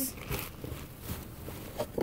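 Plastic bags and cardboard boxes rustling, with a few light knocks, as they are handled and rummaged through.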